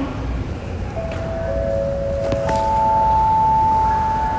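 Airport public-address chime ahead of a boarding announcement: three ringing tones, a middle note about a second in, a lower one half a second later, and a higher one about two and a half seconds in that rings on past the end. Steady hum of the terminal hall underneath.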